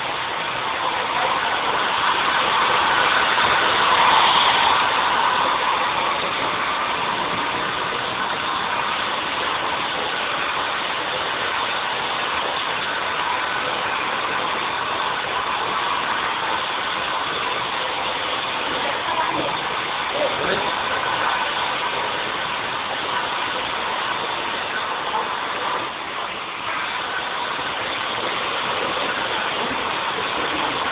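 Handheld hair dryer blowing steadily while hair is blow-dried, its sound swelling for a few seconds near the start as it moves closer.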